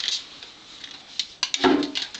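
Small clicks and knocks from a plastic handheld ORP meter being handled, with one louder, fuller knock about one and a half seconds in.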